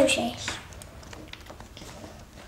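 Faint, irregular light taps and clicks of Uno playing cards being handled and laid down on a table, just after a spoken word ends.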